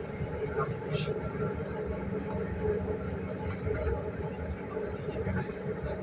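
Running noise of a moving passenger train heard from inside the carriage: a steady rumble of wheels on rails with a steady low hum.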